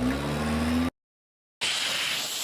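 A loud, harsh, distorted cartoon scream with a low pitch that rises slightly, cutting off just under a second in. After a short gap comes a second, hissing, noisy blast.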